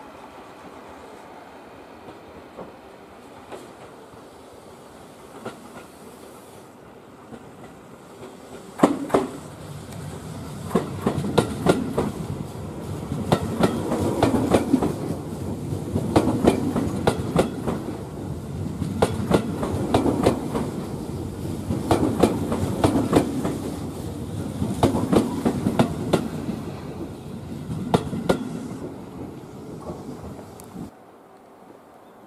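A Tobu 10000 series electric train passing slowly at close range. From about nine seconds in, its wheels clack over rail joints and points in quick pairs every two to three seconds, car after car, over a rolling rumble. The sound fades as the last car goes by near the end.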